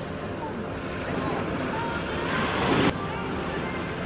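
Small sea waves washing against a sandy, rocky shoreline, with wind buffeting the microphone and faint voices in the background. A louder rush builds just past two seconds in and stops abruptly before three seconds.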